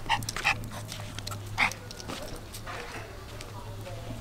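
Pomeranian giving a few short, sharp barks at water, the loudest about one and a half seconds in.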